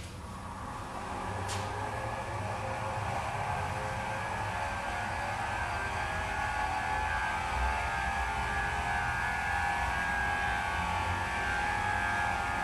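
Lindemann rotary attraction motor, a small pulsed-electromagnet motor, running unloaded mechanically with its coil's collapse energy dumped into a short circuit: a steady whirring whine that grows louder over the first few seconds, then holds even.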